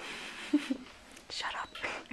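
Breathy, whispered laughter and soft whispering in short bursts, with one sharper burst about half a second in.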